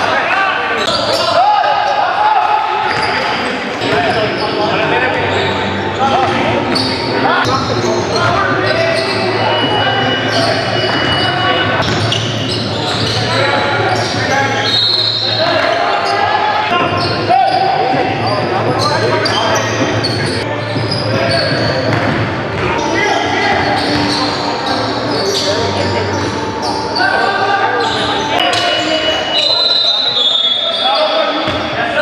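Basketball game sound in a gym: the ball bouncing on the hardwood and players calling out, echoing in the hall.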